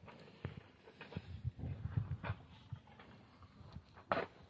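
Water buffalo feeding on dry straw at a manger: irregular crunching and rustling of the fodder, with a run of low thuds in the middle.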